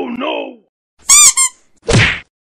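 Short edited-in comic sound effects: a brief voice-like sound, then a loud, high-pitched wavering squeak about a second in, and a short sharp burst near the end.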